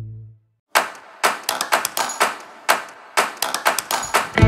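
Sharp metal clicks from a ratchet spanner tightening the cylinder-head nuts of a small single-cylinder diesel engine. The clicks come in short irregular runs, starting under a second in.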